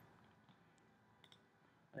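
Near silence with a few faint computer mouse clicks, a quick pair of them about a second and a quarter in.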